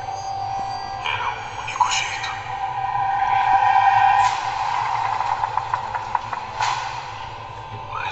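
Film trailer soundtrack: a sustained droning tone that swells to its loudest about halfway through, then eases off, with a few short voice-like sounds near the start.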